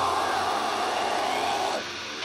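An extreme metal band's amplified stage sound: the drums drop out and a harsh, sustained, noise-like sound is held. It cuts off shortly before the end, leaving lower residual noise.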